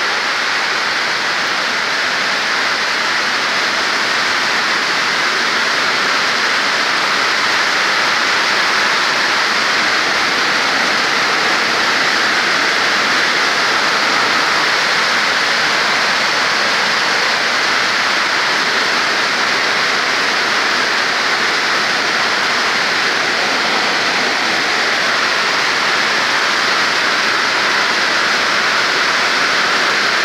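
Steady rain, a loud even hiss.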